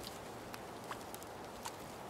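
A few faint, short ticks and crackles of someone moving through dry twigs and brush, over a quiet steady background hiss.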